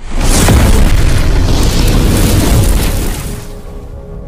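Explosion sound effect of an animated logo intro: a sudden loud boom that dies away over about three seconds, laid over intro music, with a few steady tones coming in near the end.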